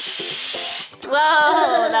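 Carbon dioxide from a baking soda and vinegar reaction hissing out through the neck of a rubber balloon as it empties. The steady hiss cuts off abruptly about a second in, and a child's "whoa" follows.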